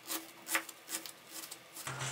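Kitchen knife dicing an onion on a plastic cutting board: short crunching cuts, about two a second, each ending with a tap on the board.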